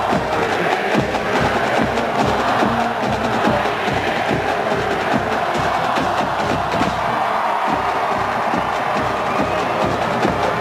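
College marching band playing, with the drums keeping a steady, even beat of about three strokes a second under the full band.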